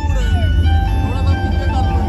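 Live dhumal band music with a heavy, booming bass, drums and a melody line that slides between held notes.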